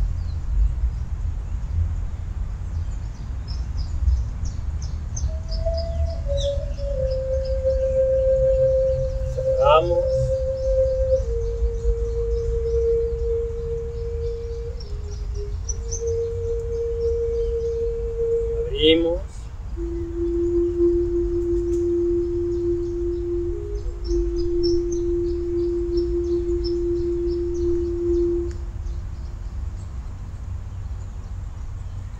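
Slow background music of long held notes that step gradually down in pitch, starting a few seconds in, with two brief sweeping glides. Birds chirp throughout over a steady low rumble.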